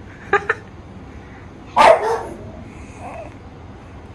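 A dog barking: two quick yaps right after the start, then one louder bark about two seconds in and a faint call after it.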